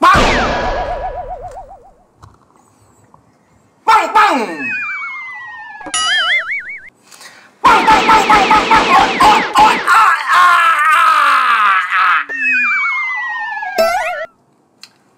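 Cartoon-style comedy sound effects: a loud boing at the start, then falling, wobbling whistle-like tones, a dense run of rapid springy boings and sweeps through the middle, and more falling wobbly tones near the end.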